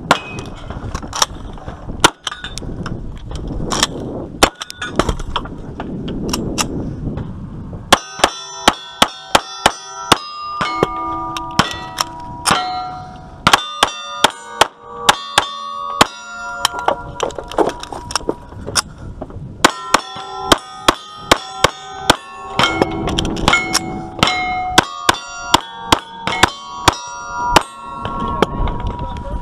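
Gunshots fired in quick strings at steel plate targets, each hit answered by a bright, ringing clang of the steel. From about a third of the way in, a 1911-style pistol fires strings of rapid shots with short pauses between them, the struck plates ringing on between the shots.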